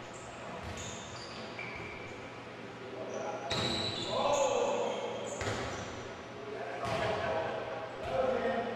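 Indoor volleyball rally: about four sharp smacks of hands and arms striking the ball, each echoing in the gym hall, with short high sneaker squeaks on the hardwood floor. Men's voices call out in the middle of the rally.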